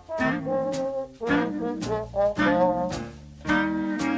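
Jazz-style band music led by brass, playing short phrases punctuated by regular drum strikes, with a brief dip about a second in. A held chord comes in near the end.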